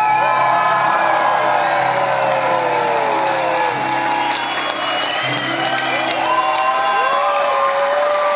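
A live rock band holding out its final chords, two long sustained chords with a short gap between, while the audience cheers and screams over them.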